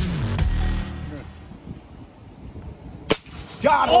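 Dance-style background music that stops under a second in, then a quiet stretch broken by a single sharp crack about three seconds in, followed by a man's drawn-out exclaimed "Oh!" at the end.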